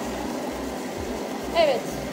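Stand mixer motor running steadily while its dough hook kneads a stiff, dry bulgur mixture in a steel bowl, before any water is added.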